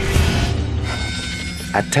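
A steady low rumble with a short rushing swish at the start; steady high music tones come in about a second in.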